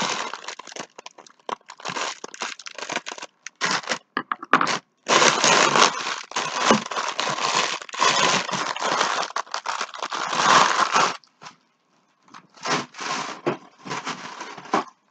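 Thin clear plastic bag crinkling and crackling as it is handled and pulled off a mesh strainer bowl, in irregular bursts, loudest through the middle, with a pause of about a second near the end.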